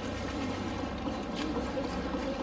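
Water sloshing and splashing in a zoo pool as two polar bears swim, over a steady wash of background noise.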